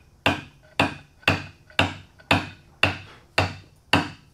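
Wooden mallet striking a chisel, chopping a round-cornered mortise square: steady, even blows, about two a second.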